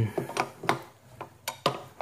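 Half a dozen sharp, irregularly spaced clicks from a wrench and pedal as the pedal is turned clockwise and tightened onto the crank arm of a DeskCycle 2 under-desk exercise bike.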